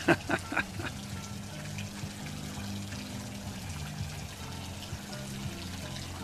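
Steady splashing and trickling of water from a pool's fountain jet, with music playing in the background.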